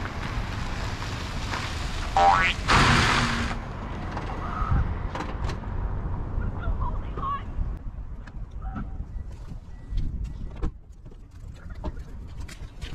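A vehicle driving past, with a short rising high-pitched squeal about two seconds in. It is followed by quieter scuffs and small knocks.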